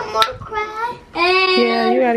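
A young child singing a few held, high notes, stepping to a new pitch partway through, with a brief sharp click near the start.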